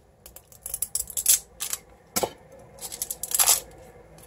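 Rustling and clicking as a tube of vanilla beans and its packaging are handled and pulled open, with a few sharper clicks spread through.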